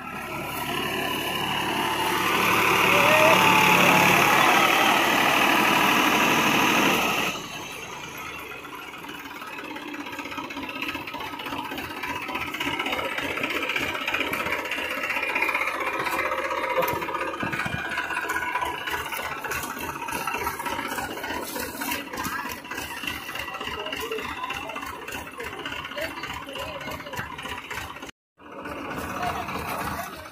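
Massey Ferguson tractor engine running hard while its rotavator churns the ground, loudest about four seconds in, cut off abruptly after about seven seconds. Several men's voices talking fill the rest.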